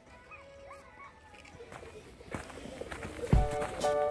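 Background music, faint at first and building, then breaking into a loud beat with heavy low hits and held chords about three seconds in.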